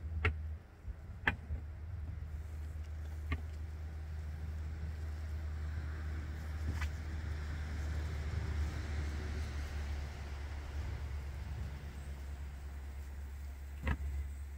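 A steady low mechanical hum with light cookware handling over it: a few sharp clicks and a soft hiss that swells and fades in the middle.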